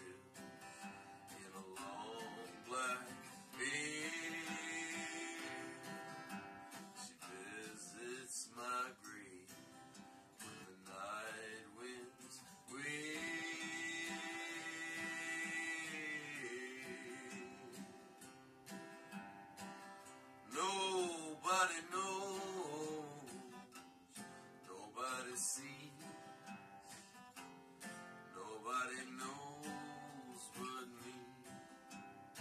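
Acoustic guitar strummed and picked in a slow folk ballad, with a man singing long held notes over it twice, each lasting a few seconds, and shorter sliding notes later.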